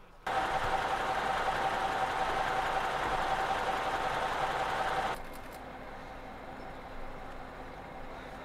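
A vehicle engine running steadily up close, with a steady whine through it; it breaks off abruptly about five seconds in, leaving a quieter, lower engine hum.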